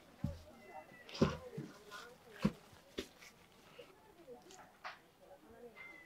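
Quiet handling sounds from a large round printed board being moved and stood upright: a few light knocks and taps, with faint rustling between them.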